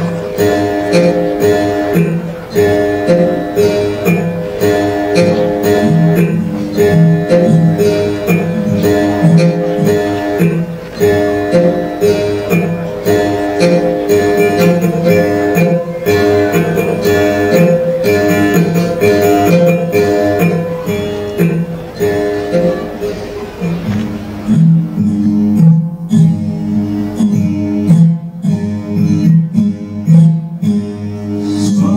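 Naga folk ensemble music accompanied by the tati, an indigenous one-stringed instrument, playing a short melodic phrase that repeats every couple of seconds. About 24 seconds in, the higher part drops away and a lower part carries on.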